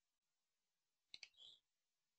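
Near silence, with two faint clicks close together a little over a second in, followed by a brief soft hiss.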